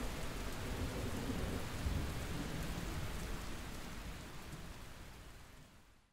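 Steady rain with a low rumble of thunder, swelling slightly about two seconds in, then fading out gradually to silence.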